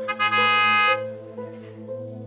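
Soft background music with a steady held melody, cut across by a single car horn honk that lasts just under a second near the start.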